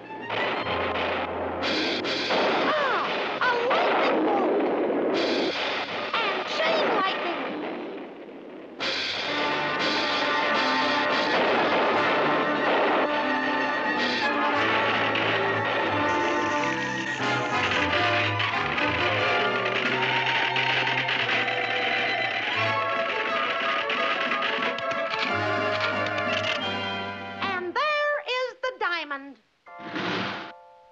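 Loud, busy cartoon music score with crashing effects for a thunder-and-lightning storm. The music dips briefly about eight seconds in and breaks off near the end into gliding pitch effects.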